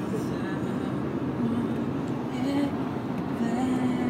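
A steady low rumbling noise, with a voice faintly holding a few low notes in the middle and again near the end.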